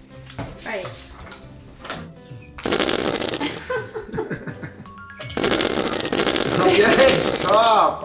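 Plastic ketchup squeeze bottle squirting and sputtering onto plates in two long, crackly spells, the first starting a little under three seconds in. Background music plays underneath, with laughter near the end.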